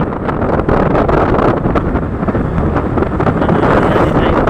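Steady wind rush over the microphone of a camera riding on a moving motorcycle, with the bike's running blended into it.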